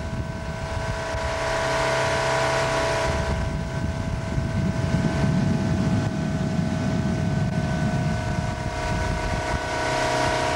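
Tow boat's engine running steadily at speed while pulling a water skier: a steady whine over a low rumbling rush of wind and water.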